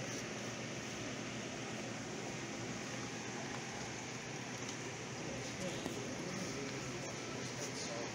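Steady background hiss and hum of a pet shop with faint, indistinct voices in the distance.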